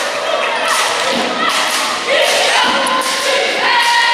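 Cheerleaders chanting together in a gymnasium, over crowd voices, with several dull thumps.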